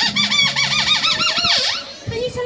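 Sweep's squeaker voice: a fast run of high, arching squeaks, about eight a second, ending in one long falling squeak.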